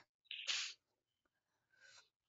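A person's single brief, sharp breathy noise, under half a second long, about half a second in.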